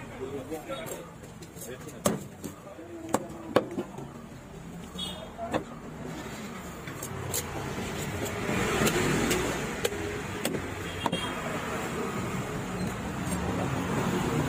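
A knife chopping and cutting through a large snapper on a wooden log chopping block, with a few sharp knocks, the loudest in the first few seconds. From about halfway through, a passing motor vehicle's rumble builds and stays under the knocks.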